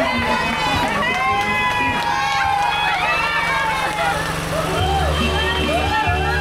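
Several women talking and laughing together, voices overlapping, over background music whose bass line grows stronger near the end.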